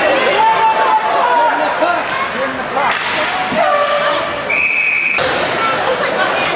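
Ice hockey rink noise: crowd voices and chatter with a few sharp knocks, and a brief steady high whistle tone near the end.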